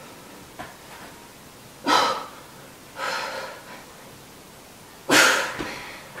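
A woman breathing hard under the strain of holding a low plank: four forceful exhalations, the strongest about two seconds in and near the end.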